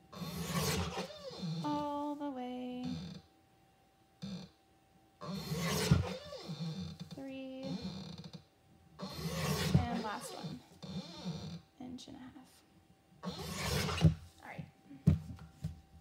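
Paper cutter slicing through construction paper in about four separate cuts, each a rasping stroke of two to three seconds, with quiet pauses between them while the paper is repositioned.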